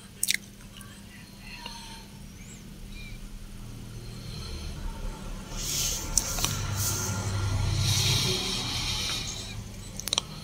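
Industrial lockstitch sewing machine running in a short stitching burst that builds from about four seconds in and stops near the end, sewing the top of a folded fabric strip. A sharp click comes just after the start.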